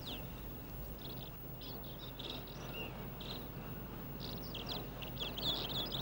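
Birds chirping: many short, high chirps scattered throughout, over a faint low hum.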